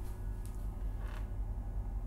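A short creak about a second in, over a steady low hum.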